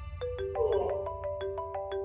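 Mobile phone ringing with a melodic ringtone: a tune of stepping notes over a quick, even tick of about six a second, starting a moment in.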